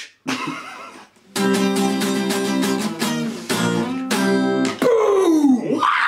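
Acoustic guitar strumming the closing chords of a song: a short strum, then two full chords left ringing, followed near the end by a loud sound sliding down in pitch.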